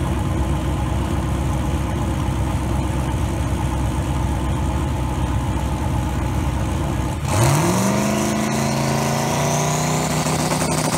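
Drag race car engines idling with a loud, dense rumble at the starting line. About seven seconds in, one engine revs up quickly and holds steady at high revs, ready to launch.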